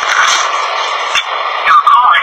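Muffled voices under a steady hiss, heard through a thin, radio-like recording with no bass. Louder speech comes near the end.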